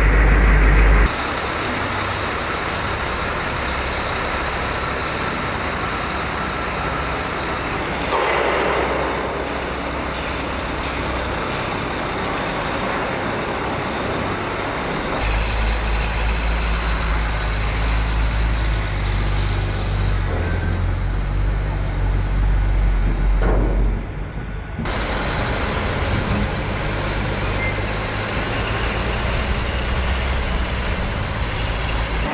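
Heavy military diesel trucks running and driving off a ship's ramp onto a quay, with a short air-brake hiss about eight seconds in. The engine sound changes abruptly a few times as the shots change.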